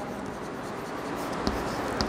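Chalk writing on a blackboard: soft, scratchy strokes, with one sharper tick about a second and a half in.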